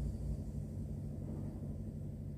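Steady low hum and rumble of idling diesel truck engines, heard from inside a truck cab.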